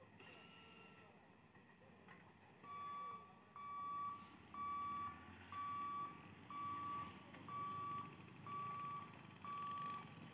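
Level-crossing barrier warning beeper sounding as the boom lifts: a steady high electronic beep about once a second, starting a few seconds in. Under it is the low rumble of motorcycle engines moving up to and across the crossing.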